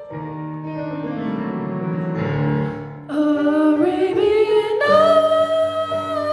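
Piano accompaniment plays a descending line for about three seconds. Then a young female voice sings in through a microphone, sliding up in pitch and holding a long note over the piano.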